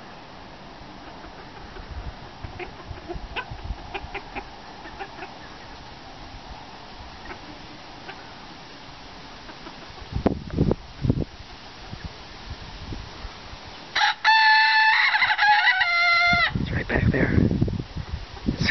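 A rooster crows once, loudly, about fourteen seconds in: a long call of several linked parts lasting about two and a half seconds. Before it come faint, scattered clucks and a few low thumps about ten seconds in.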